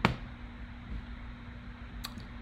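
A single sharp click from the computer being operated, followed by a steady low hum.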